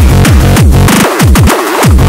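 Hard tekno electronic track: a fast, distorted kick drum hitting in quick succession, each hit sliding down in pitch. The bass drops out briefly about halfway through and again near the end.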